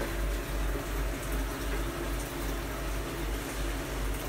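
Steady running-water noise with a constant low hum, typical of a reef aquarium's pump and water circulation.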